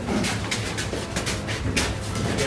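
Footsteps and shuffling of several people walking on a hard floor: irregular knocks and scuffs.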